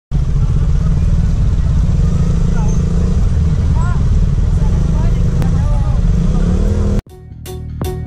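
Street traffic with a motorcycle engine running at a standstill and people's voices over it; about seven seconds in it cuts off abruptly to intro music with a regular beat.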